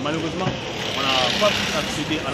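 A motorcycle passes close by on the street, its engine noise swelling about a second in and fading near the end, under a man's talking.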